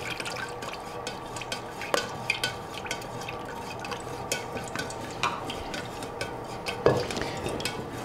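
Fragrance oil being stirred into melted soy wax in a stainless steel pouring pitcher. The utensil gives small, irregular clicks and scrapes against the metal, with a couple of sharper knocks.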